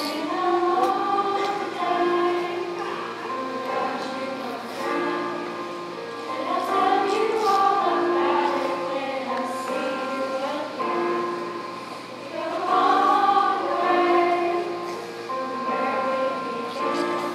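Middle school mixed chorus of boys and girls singing together, a flowing melody in phrases that swell and fade.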